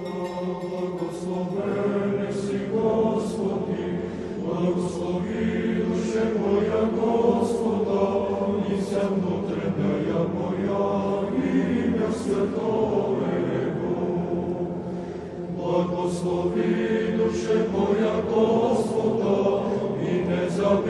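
A choir singing an Orthodox church chant: sustained chords moving slowly from one to the next, with sung words.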